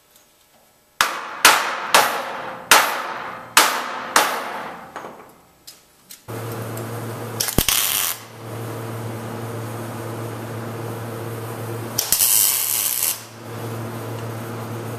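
About six sharp knocks on steel in the first few seconds, each ringing briefly. Then a MIG welder switches on with a steady hum, and two short bursts of arc crackle follow, the second about a second long, as the four-link bracket is tack-welded to the frame.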